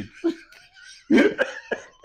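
A man laughing hard and coughing: a small burst, then a loud burst about a second in, followed by shorter sharp bursts.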